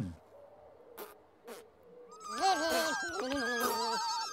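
Several high, squeaky voices of the Pontipines chattering together, overlapping and wavering in pitch. They start about halfway through, after near quiet broken by two faint clicks.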